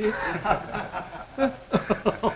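Men chuckling and laughing in short bursts at a joke, the laughs growing stronger near the end.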